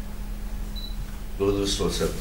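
A steady low hum, then a man's voice starts speaking about one and a half seconds in.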